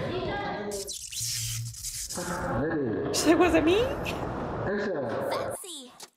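Several young women's voices talking and exclaiming in Korean, with a few high sliding calls in the middle; the sound drops out just before the end.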